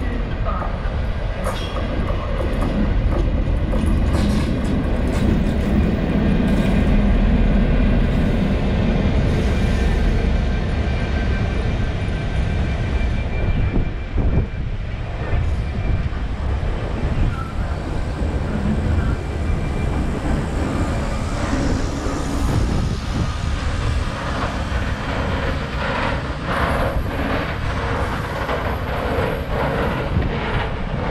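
Class 69 diesel locomotive 69002, with an EMD 12-710 engine, passing with a train of flat wagons. A deep engine rumble is loudest in the first third; after that the wagons' wheels run on with a rolling clatter over the rail joints, the clicks coming thicker near the end.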